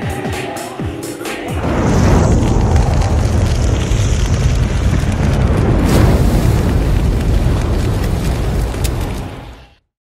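Background music with a beat, then about two seconds in a sudden loud cinematic boom and low rumble, with a sharp hit about six seconds in. It fades out near the end.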